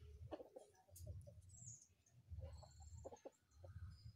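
Near silence with faint bird calls, among them clucking like domestic fowl and thin high chirps, over a soft low rumble that swells and fades about once a second.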